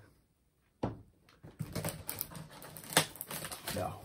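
A knife blade cutting through a cardboard box and its packing tape: an uneven scratchy crackling with sharp clicks. It begins about a second in, after a brief silence.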